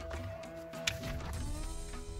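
Celtic-style instrumental background music with held notes over a low pulse, and a single brief tap a little under a second in.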